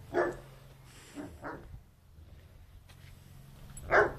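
Leonberger dogs barking in play: a loud bark just after the start, two quieter ones a little over a second in, and another loud bark near the end.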